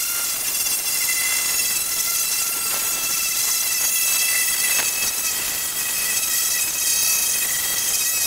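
Pneumatic air file (straight-line sander) running steadily with a high hiss and whine as it is pushed along a car trunk lid, sanding the body work with 150-grit paper.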